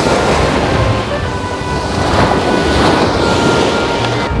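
Small sea waves breaking and washing up over the sand in a continuous rush of surf, swelling about two seconds in.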